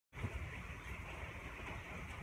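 Steady rain falling outside an open metal barn, an even hiss over a low rumble, with one light knock just after the start.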